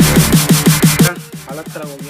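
Electronic background music with a fast, even run of short bass hits that drop in pitch, about six a second, which breaks off about a second in, leaving quieter sliding tones.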